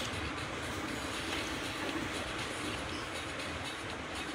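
Steady background noise: an even room hum and hiss with no distinct events.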